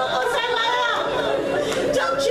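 Women's mourning voices: high, drawn-out wailing cries, with several voices overlapping in a large hall.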